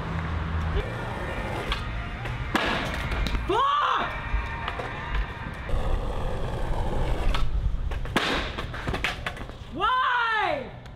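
Skateboard wheels rolling on concrete, with sharp board impacts about two and a half seconds in and again near eight seconds, as a trick is tried on a stair handrail and ends in a fall. Drawn-out rising-then-falling shouts from onlookers come just after the first impact and again at the fall near the end.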